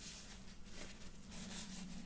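Faint soft rubbing as a tissue is wiped over the wet acrylic paint on a small canvas, strongest in the second half, over a low steady hum.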